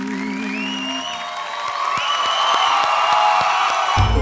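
The last held sung note of a song with acoustic guitar ends about a second in, then a studio audience applauds and cheers, with high rising whistles over the clapping.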